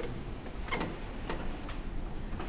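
Quiet room tone with a steady low hum and three faint clicks, spaced about half a second apart, from a little under a second in.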